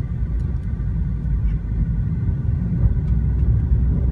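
Low, steady rumble of a 2012 Mitsubishi Lancer GT-A with its 2-litre four-cylinder engine and CVT, heard inside the cabin while the car drives at low speed, growing a little louder.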